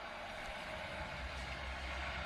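Steady arena background noise, an even hiss with a low rumble that grows slightly stronger in the second half.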